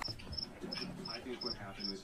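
A cricket chirping steadily, with short, high chirps about four a second, and faint low voices underneath.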